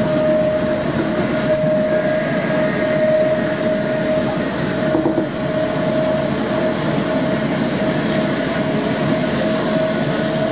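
Class 455 electric multiple unit running at speed, heard from inside the carriage: a steady rumble of wheels on track with a steady tone held at one pitch over it.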